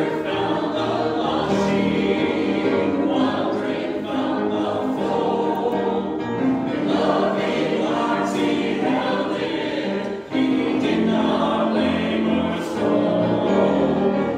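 Small mixed church choir of men and women singing an anthem together, with a short breath between phrases about ten seconds in.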